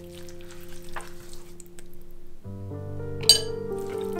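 Background music over soft, wet rubbing and slapping of hands massaging marinade into the skin of a raw whole chicken, with one sharp, bright clink about three seconds in.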